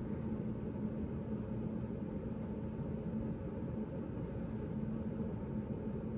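Steady low hum with an even rushing noise from air conditioning running in the room.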